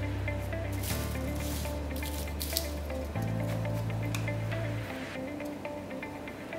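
Background music with held bass notes that change every second or two under a light melody.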